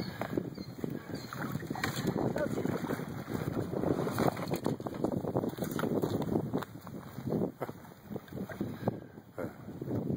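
Wind noise on the microphone over the splash and dip of oars as a small inflatable pontoon boat is rowed across shallow water. The sound is gusty and uneven, easing for a couple of seconds before rising again near the end.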